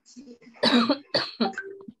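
A person coughing over a video call: two loud coughs about half a second apart.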